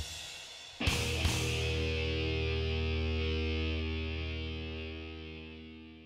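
A distorted electric guitar chord, struck about a second in with a second accent just after, then left to ring and slowly die away.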